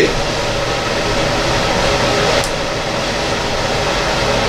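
Steady rushing background noise with a low hum under it and a faint click about two and a half seconds in.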